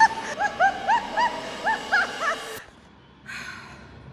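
Water splashing and churning as someone plunges into a pool, with a run of short, high, repeated yelps over it. The splashing cuts off suddenly about two and a half seconds in.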